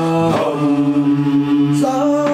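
A group of men singing a Zulu gwijo chant a cappella in harmony, holding long notes. The chord changes about half a second in, and a higher part comes in near the end.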